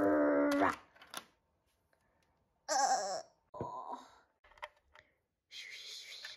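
A person's voice making drawn-out wailing sounds: one long call falling in pitch at the start, then two short cries about three and four seconds in. A few light clicks of plastic toy pieces follow.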